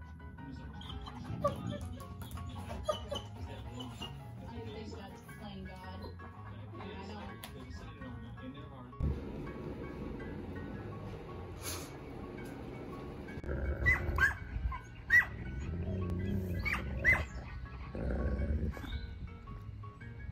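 Wolf dogs vocalizing as they mouth-spar in play, over steady background music; the second half is louder, with several short, sharp sounds.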